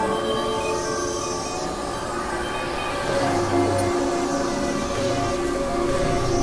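Experimental electronic synthesizer music: layered held drone tones that step to new pitches every second or so, over a constant noisy hiss.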